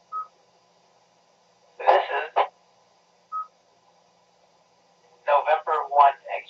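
Two short electronic beeps of the same pitch on an amateur radio net, one right at the start and one about three seconds later. They are heard through a radio speaker over a faint steady hum. A brief burst of a voice falls between them, and a voice comes on near the end.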